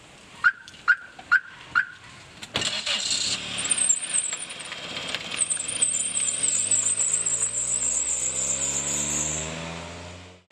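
Four short electronic beeps, then a car door shutting about two and a half seconds in. After that the sedan's engine starts and runs, revving with its pitch climbing steadily as the car pulls away. A high warbling sound rides above it.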